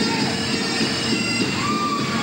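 Bagpipe music: a steady drone under a high chanter melody that holds long notes and slides between them.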